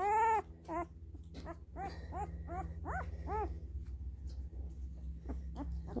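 Young labradoodle puppy whimpering in a row of short, arched cries. The loudest cry comes right at the start and fainter ones follow about every half second, over a steady low hum.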